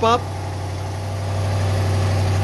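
Steady low hum from a BMW M850i convertible as its power soft-top mechanism starts to raise the top, growing a little louder after about a second.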